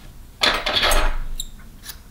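A loud rustle lasting about a second as small metal scissors are handled, then two sharp metallic clicks from the scissors' blades.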